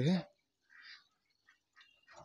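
A man's voice ends a word, then it is mostly quiet, with one faint short sound just under a second in and a few faint small ticks near the end.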